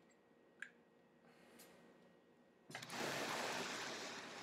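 A small click, then a loud rush of breath through a sub-ohm vape setup, a 0.5 ohm single coil, starting nearly three seconds in and lasting about two seconds: a hit on the vape.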